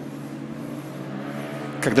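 A pause in a man's amplified speech, filled by a steady low hum of several held tones; his voice comes back in near the end.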